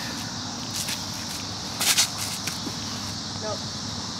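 Steady outdoor background noise with two brief scuffs about one and two seconds in: sandalled footsteps on a concrete tee pad during a disc golf throw.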